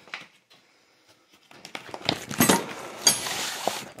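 Rummaging through steel combination wrenches on a cloth: rustling and shuffling with light metal clinks and brief ringing. It starts about a second and a half in and is busiest in the second half.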